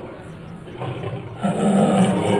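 A recorded tiger roar. It swells and is loudest about one and a half seconds in.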